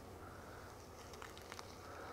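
Very quiet handling of a sheet of tissue-thin end paper being folded over the end of a hair section, with a couple of faint ticks just past the middle.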